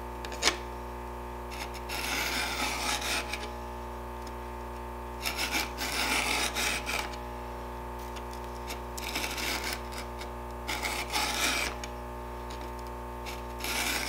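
A Stihl 2-in-1 Easy File rasps across the cutters and depth gauges of a chainsaw chain held in a vise. There are about five smooth strokes, each a second or two long, with short pauses between them. A light click sounds about half a second in.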